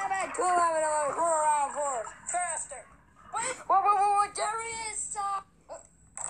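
Cartoon voices from an animated film's soundtrack, singing and calling out in short, pitch-sliding phrases like a TV-commercial jingle. There are brief breaks about two and three seconds in.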